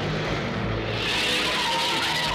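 Cartoon sound effect of a military jeep's engine running as it pulls away, with a tyre squeal building about a second in.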